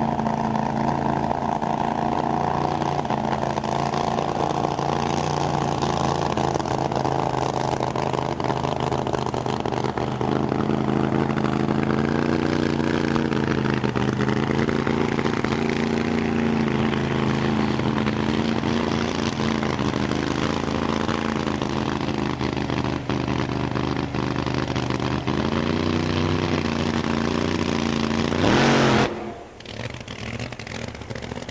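Top alcohol funny car's supercharged, alcohol-burning V8 running at a steady idle, its pitch dipping briefly and coming back up a few times. Near the end a very fast rising sweep, then the sound cuts off suddenly.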